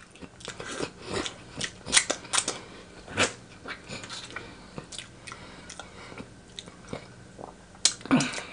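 Close-miked chewing and lip smacking as a person eats meat by hand: irregular wet clicks and smacks, with finger licking near the end.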